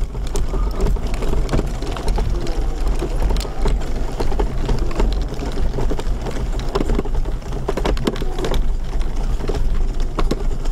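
Wheelchair rolling over a rough, lumpy dirt path: the wheels crunch on grit and the frame rattles in a dense run of small clicks, over a steady low rumble.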